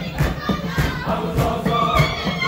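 Lugbara traditional dance music: a group of voices singing together over hand drums beating a steady rhythm, about one and a half strokes a second.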